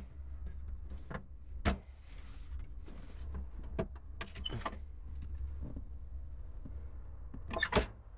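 Clicks and knocks of hands working the dashboard knobs and pulling out a small dash drawer in a 1967 Jeep Wagoneer, with the engine off. The sharpest knock comes a couple of seconds in and a quick run of clicks near the end, over a steady low rumble.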